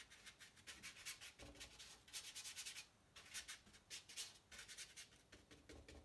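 Faint scratching of a small paintbrush scraped and dabbed across watercolour paper in short, quick strokes, with a denser run of strokes about two seconds in.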